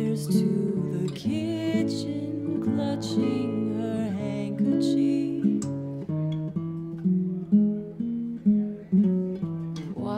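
Acoustic guitar playing a slow song in picked notes, with a woman singing over it for the first few seconds; the last few seconds are guitar alone.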